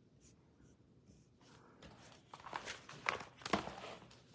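Rustling and scraping of small objects being handled close to the microphone on a tabletop, getting louder in the second half with a few sharper clicks.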